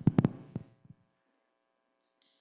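A quick run of sharp thumps in the first half second, with a couple of softer ones just after, then only a faint steady hum.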